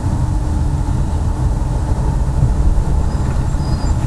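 Steady low rumble of a car's engine and road noise, heard from inside the cabin of a moving taxi.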